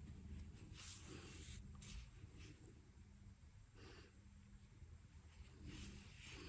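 Near silence, with faint soft rustles of yarn being drawn through crocheted fabric as a hood is sewn onto a coat.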